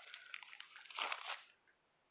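Faint rustling and crinkling of wrapping paper being torn off a book, in two short scrapes about half a second and a second in.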